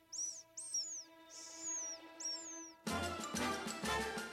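Four short, high, bird-like tweets, each curving downward in pitch, over a soft held chord: a cartoon cue for a dazed, bewildered character. About three seconds in, a loud, brisk orchestral music cue with steady drumbeats takes over.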